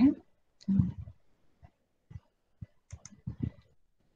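A handful of short, separate clicks spread over about two seconds, with a brief low vocal sound about a second in.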